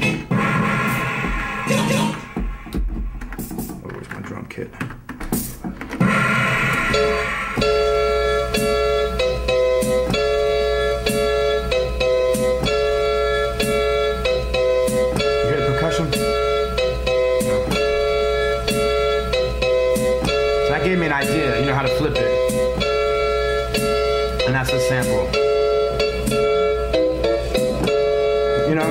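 A hip-hop beat being built on a sampler: a sampled loop repeating a chord pattern over a steady drum beat, running steadily from about seven seconds in. Before that come several seconds of uneven sounds and voices.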